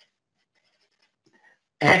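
Near silence with a few faint small ticks, then a man's voice speaking a word near the end.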